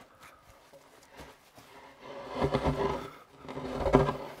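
A heavy wooden timber beam being dragged off a pickup's tailgate, scraping and rumbling in two loud stretches in the second half.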